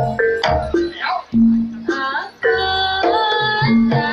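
Live Javanese gamelan music of the kind that accompanies a singo barong dance: short pitched percussion notes and drum strokes under a sliding, wavering melody line.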